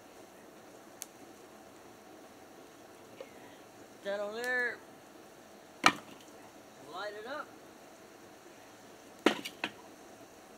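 Split firewood logs dropped onto a burning fire in a metal fire bowl: a faint knock about a second in, a sharp loud knock about six seconds in, and a quick cluster of knocks near the end. Twice a short wordless vocal sound is heard between the knocks.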